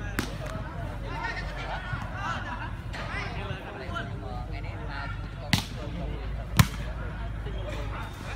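Two sharp smacks of hands striking a volleyball, about a second apart, the second the louder, over background chatter of people talking.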